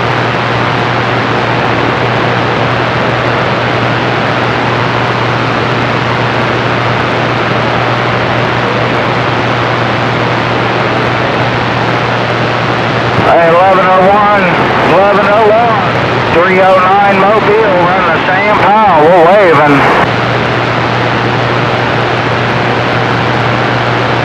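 CB radio receiver giving loud, steady static hiss with a low hum, as on an open carrier. About halfway through, a distant skip station's voice comes through for several seconds, warbling and wavering in pitch, then the hiss and hum return.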